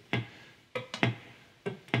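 Three-string cigar box guitar fingerpicked, thumb and finger plucking single notes in turn: a handful of short plucked notes, each dying away quickly. This is the straight, driving rhythm, with the finger notes placed between the thumb beats.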